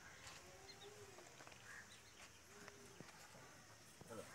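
Near silence: faint outdoor background with a few faint, short calls and light clicks.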